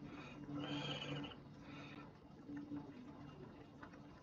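Faint room tone: a low, wavering hum, a soft breath about a second in, and a few light computer-keyboard clicks as letters are typed.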